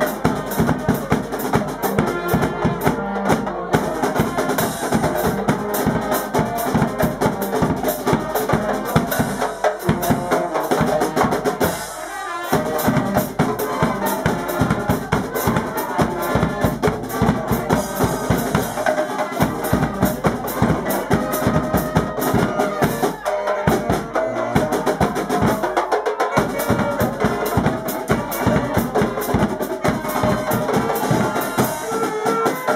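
Dutch carnival band playing live: a snare drum and a large bass drum beat out a steady rhythm under saxophones and other wind instruments.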